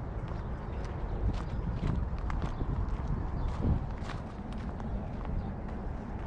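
Footsteps on a dry, leaf-littered dirt path: irregular crunching clicks, a few to several each second, over a steady low rumble.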